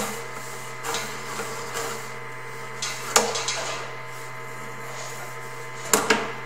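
Sewer inspection camera's push cable being pulled back through the line, with a few irregular knocks and clatters over a steady electrical hum from the camera equipment.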